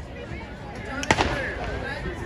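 A starter's pistol fires once about a second in, a single sharp crack with a short echo, starting a race. Spectators' voices and chatter carry on around it.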